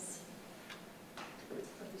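A quiet room with three faint, short clicks or taps spread over two seconds, the middle one the loudest.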